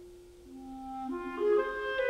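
Solo clarinet playing a slow melody of single held notes. It begins very softly and swells louder, with the notes stepping mostly upward.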